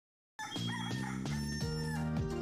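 A rooster crowing over the start of music, beginning about half a second in after a moment of silence.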